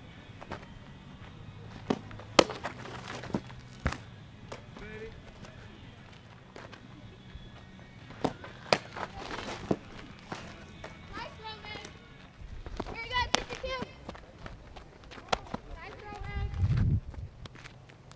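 Sharp pops of a softball smacking into leather gloves during catcher throwing drills, a dozen or so spread unevenly, the loudest a few seconds in. Faint voices call out in between, and a short low rumble sounds near the end.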